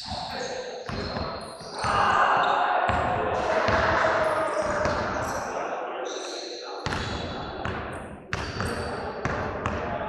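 Voices with repeated sharp thuds, the voices densest and loudest from about two to six seconds in.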